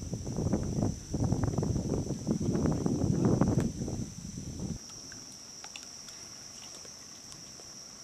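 Crickets chirring steadily in a constant high-pitched drone. For the first half a loud, uneven low rumbling noise lies over them, then stops abruptly, leaving the crickets alone.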